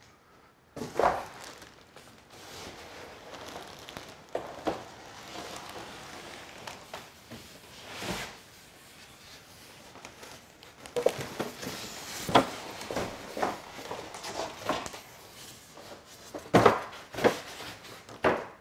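Packaging being pulled off a boxed table saw: plastic wrap and cardboard rustling and crinkling, with irregular knocks and scrapes as the box and styrofoam end pieces are handled. It starts about a second in and is busiest in the last few seconds.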